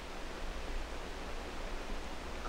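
Steady hiss with a low hum underneath: the background noise of an old 16 mm film soundtrack, with no other distinct sound.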